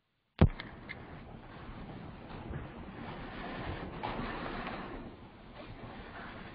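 A sharp pop as a microphone's audio cuts in from dead silence about half a second in, followed by a continuous, unsteady rushing and rustling noise from the live microphone.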